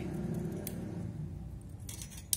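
Small metallic clicks of a steel vernier caliper being slid open and set against a carburettor throttle slide: one click about a third of the way in and a couple more near the end, over a faint steady hum.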